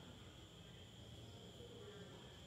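Near silence with a faint, steady, high-pitched insect chirring.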